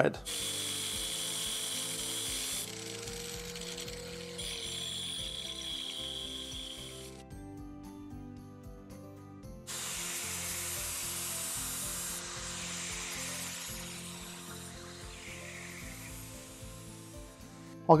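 Angle grinder running against a steel tube in several stretches, grinding a groove and taking the tube down to size, with a quieter gap about seven to ten seconds in.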